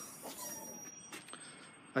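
Quiet handling sounds as the tailgate of a Nissan Qashqai+2 swings open, with only faint ticks and no distinct thud.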